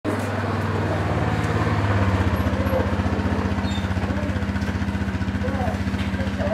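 A motor running steadily with a low hum and a fast, even throb; its tone shifts slightly about two seconds in.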